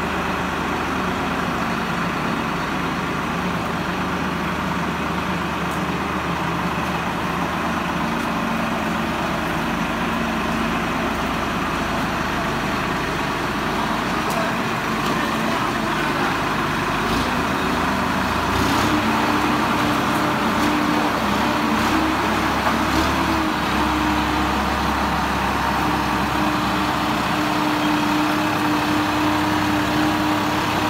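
Swaraj 969 FE tractor's diesel engine working hard as it climbs a ramp, running steadily. About two-thirds of the way through, the note rises and gets a little louder.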